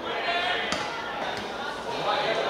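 Players' voices calling out on the pitch, with the sharp thud of a football being kicked about two-thirds of a second in and a second, lighter thud just over a second in.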